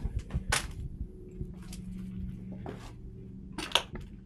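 Footsteps on a floor littered with debris: a few scattered crunches and clicks, a sharp one about half a second in and another near the end, over a faint low steady hum.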